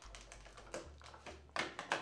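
Faint, irregular light clicks and taps, with a couple of louder ones near the end.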